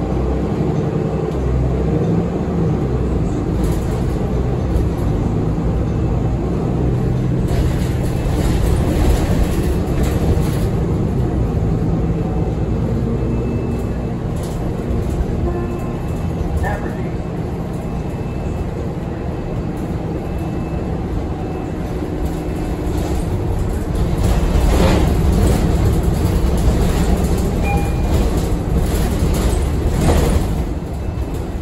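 Cabin noise inside a 2015 Nova Bus LFS city bus under way: a steady low rumble of engine and road with rattles, louder for a few seconds about a third of the way in and again near the end.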